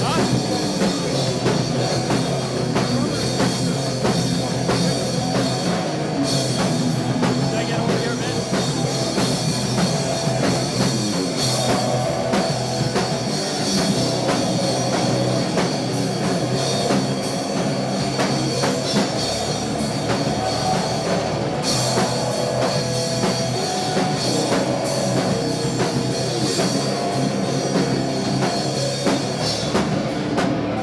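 A heavy metal band playing live: distorted electric guitars over a fast drum kit, loud and unbroken.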